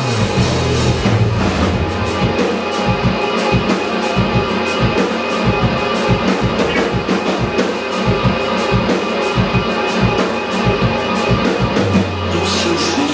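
Live rock band playing: electric guitars over a steady drum-kit beat, with the drum hits coming in a fast, even rhythm.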